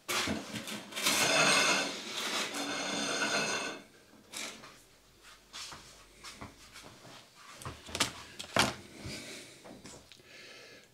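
Handling noise on a tabletop: a scraping, rubbing stretch of about four seconds, then several short knocks and clicks.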